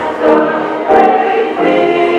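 Music: a choir singing a hymn, several voices holding notes together and moving from chord to chord.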